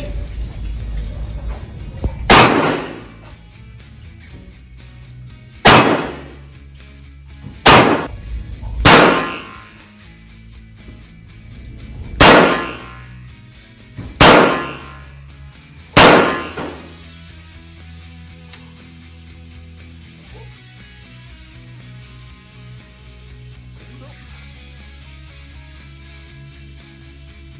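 Seven single shots from a Taurus Raging Hunter .357 Magnum revolver with a recoil compensator, spaced unevenly between about two and sixteen seconds in. Each sharp report rings off the walls of the indoor range, and faint background music follows the last shot.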